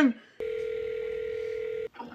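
A steady telephone line tone, like a dial tone, holding one pitch for about a second and a half and then cutting off suddenly.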